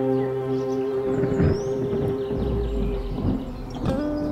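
Instrumental music: an electric guitar played through a Roland GR-55 guitar synthesizer over a programmed backing track, holding one long note. A low rumble comes in about halfway through, and a new note is struck near the end.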